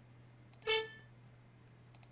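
A faint click, then a short, bright ringing ding about two-thirds of a second in that fades within a third of a second, over a low steady hum.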